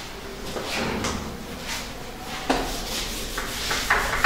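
Whiteboard duster rubbing across a whiteboard in repeated short wiping strokes, getting louder and quicker near the end as marker writing is erased.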